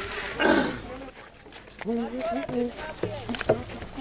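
A man's voice with no clear words: a loud, rough shout about half a second in, then short pitched vocal sounds.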